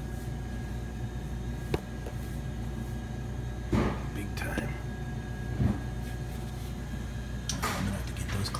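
Steady low machine hum with a faint high whine, broken by a sharp click about two seconds in, a few brief scrapes and knocks in the middle, and the start of a voice near the end.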